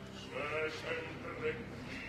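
An opera singer's voice in short, quieter phrases whose pitch bends and wavers, over soft, steady low orchestral accompaniment.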